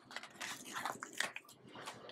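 Paper sticker sheet being handled as a sticker is peeled off it: a string of small, irregular crinkles and taps.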